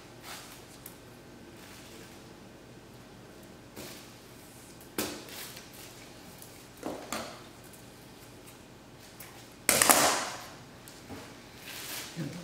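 Gloved hands handling a raw whole chicken on a plastic sheet while trussing it with twine: plastic crinkling and rustling in a few short bursts, the loudest just before ten seconds in.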